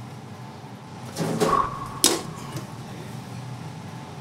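Utensils and cookware being handled in a commercial kitchen over a steady kitchen hum, with one sharp metallic clink about two seconds in.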